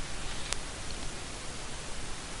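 Steady hiss of the recording's background noise, with one faint click about half a second in.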